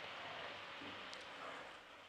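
Faint sizzling of a spice paste frying in oil in a nonstick pan, fading out near the end.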